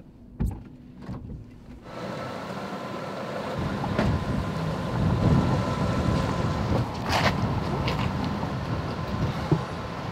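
A couple of soft knocks inside a car, then from about two seconds in a steady noise of street traffic that swells in the middle and eases off again, with one sharp clack about seven seconds in.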